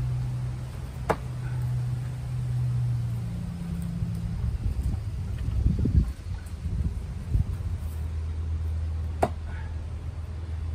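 Two sharp knocks, one about a second in and one near the end, as a thrown Ka-Bar tanto knife strikes the wooden target board. Under them runs a steady low hum.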